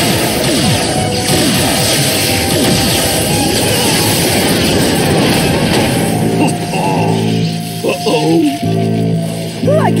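Cartoon soundtrack of a magical energy battle: dense crackling blast effects full of falling swoops over the dramatic score. About six seconds in it gives way to held musical chords, with brief vocal cries near the end.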